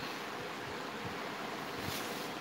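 Steady low hiss of room noise picked up by the microphone, with no distinct sound in it.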